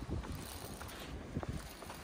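Wind buffeting the microphone, an uneven low rumble with a few faint ticks.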